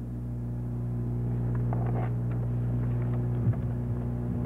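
Steady low electrical hum from the sound system, a stack of even tones that swells over the first couple of seconds and then holds, with a few faint ticks and rustles in the middle.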